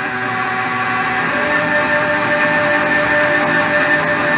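Live rock band music opening on sustained electric guitar chords that swell steadily louder, with a fast, even high ticking rhythm coming in about a second and a half in.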